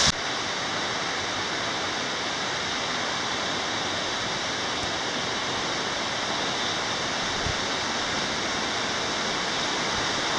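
Steady rush of water flowing over rocks in a creek.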